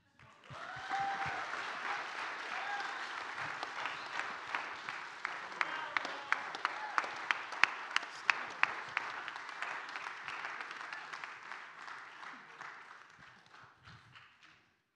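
Congregation applauding after a spoken testimony, with a couple of short whoops near the start. One loud clapper close to the microphone stands out at about three claps a second through the middle, and the applause fades out toward the end.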